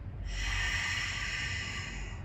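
A woman's long, audible exhale through the mouth: a steady breathy hiss that starts about a quarter second in and lasts nearly two seconds, the out-breath of a diaphragmatic breathing exercise.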